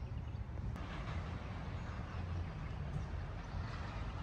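Steady outdoor background noise: a low rumble under a faint hiss, with no distinct events.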